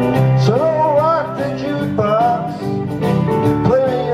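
A man singing karaoke over a country music backing track.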